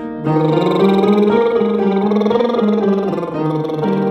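A lip trill (lip buzz) vocal warm-up over a keyboard playing a stepwise pattern of notes; the buzzing tone starts about a quarter second in after a breath and glides up and down in pitch with the notes.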